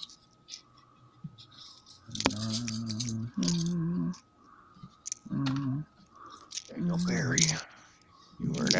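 A man's voice drawing out four long, steady notes, after a couple of seconds of light clicking.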